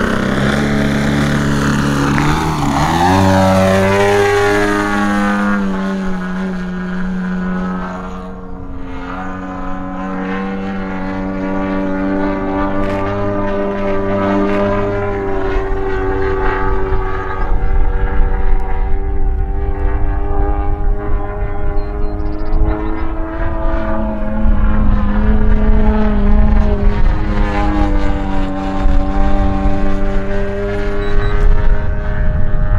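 Twin-cylinder two-stroke gas engine with tuned pipes (a DA 120) driving the propeller of a 140-inch RC Bushmaster in flight. Its pitch falls as it passes low in the first few seconds, then the drone rises and falls with the throttle through its manoeuvres. A low rumble joins in about halfway through.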